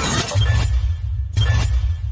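Countdown-timer sound effect: a deep, pulsing drone with a sharp hit about once a second, one for each number that ticks down, two hits here. A sweeping whoosh dies away at the very start.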